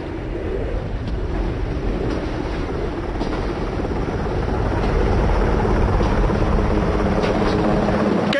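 A steady, low mechanical rumble, like an engine or rotor, that grows gradually louder over the first half and then holds.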